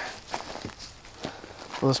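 A few soft footsteps on wood-chip mulch, with faint rustling of frost-cloth row cover being handled.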